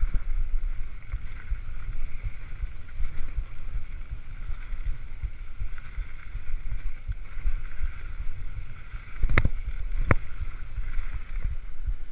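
Mountain bike rolling fast down a dirt trail, heard through a handlebar-mounted camera: a steady low rumble of tyres and frame vibration with wind buffeting the microphone. Two sharp knocks about a second apart near the end as the bike clatters over bumps.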